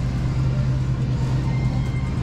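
Steady low hum of supermarket refrigerated freezer cases, with a faint thin whine near the end.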